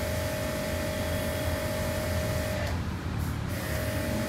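Steady background machine hum with a thin, steady whine; the whine cuts out briefly about three seconds in.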